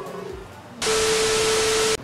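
A TV-static sound effect used as an edit transition: loud, even hiss with one steady tone running under it. It starts just under a second in and cuts off suddenly.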